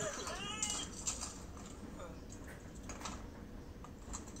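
A home-made video playing through a tablet's small speaker. A brief high-pitched voice rises and falls in the first second, then scattered light clicks and taps follow.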